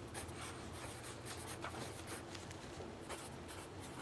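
Pencil writing on lined paper: faint, quick scratching strokes as a word is written out, over a low steady hum.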